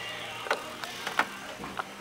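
A handful of short, irregular clicks and light knocks from a boat's driver bucket seat being worked by hand: the plastic and metal of its swivel and slide mechanism.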